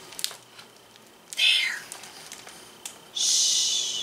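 A woman's long whispered "shhh" near the end, after a short whispered sound about a second and a half in. A book page is turned with a soft click just after the start.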